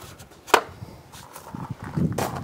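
A single sharp click about half a second in as a round dial thermometer is set down on a wooden slat shelf, followed by faint handling noise.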